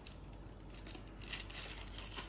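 Scissors snipping into the wrapping of a boxed book, faint crinkling of the wrapper, starting about a second in.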